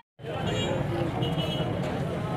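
Street background noise: a steady low traffic rumble with faint voices, after a brief dropout at the very start.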